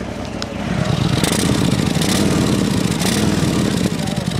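2022 Harley-Davidson Softail's Milwaukee-Eight V-twin running through a Jekill & Hyde exhaust with short headers and short mufflers, its flaps closed in the quiet mode. The engine is blipped about three times.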